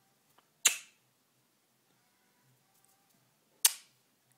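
Two sharp pops about three seconds apart, each with a short fading tail.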